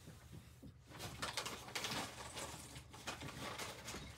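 Irregular rustling with many small clicks, starting about a second in: close handling noise of hands working at the computer's cables and ports.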